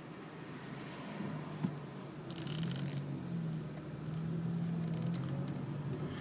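Quiet car engine and road noise heard from inside the cabin as the car pulls away: the engine note rises and then holds steady. A single light click about a second and a half in.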